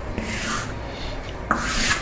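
Chalk drawn in long straight strokes across a chalkboard: two scratchy strokes, the second and louder one starting about one and a half seconds in.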